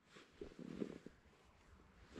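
Near silence, with a faint low murmur in the first second.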